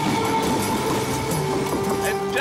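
Film soundtrack: music with held tones over a steady, noisy clatter.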